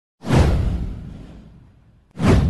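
Intro whoosh sound effect: one sudden swoosh with a heavy low end, coming in a fraction of a second in and fading away over about a second and a half.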